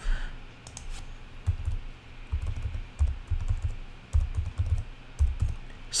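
Quiet typing on a computer keyboard: irregular keystrokes, each a light click, many with a dull thump on the desk beneath.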